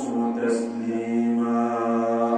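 A man's voice chanting in slow, melodic recitation, holding long steady notes.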